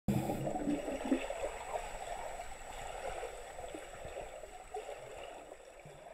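Water in a swimming pool as heard underwater: a muffled rushing and bubbling that slowly fades out.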